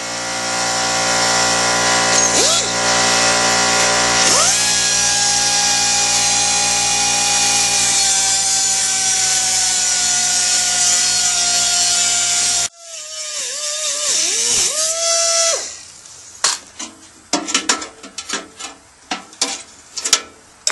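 Cut-off wheel cutting through the steel wall of an ammo can to open a square fuel door: a loud, steady whine over a grinding hiss for about twelve seconds that cuts off suddenly. Then a shorter run of the tool with its pitch dipping and rising, followed by a series of sharp metal clicks and knocks near the end.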